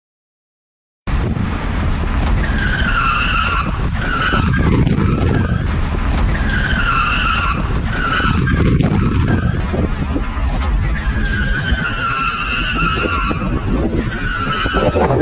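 Tyres of a BMW E34 520 squealing through repeated drifts, three long squeals over the loud, steady noise of its inline-six engine, heard from inside the cabin. The sound starts suddenly about a second in.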